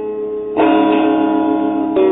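Electric guitar playing the song's intro: sustained notes ringing on, with new notes struck about half a second in and again near the end.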